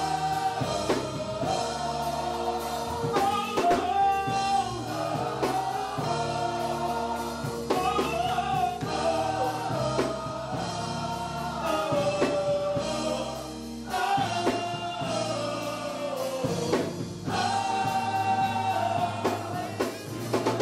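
Gospel choir singing with a lead vocalist, accompanied by keyboard, with long held notes in the melody.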